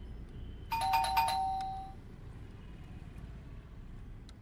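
Electronic doorbell chime: a quick run of about four bell-like notes about a second in, ringing on and fading away within a second.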